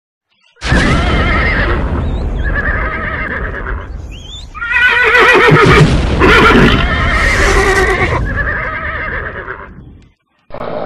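Horses whinnying: a string of long, wavering neighs one after another, loudest in the middle and fading near the end, over a low rumble.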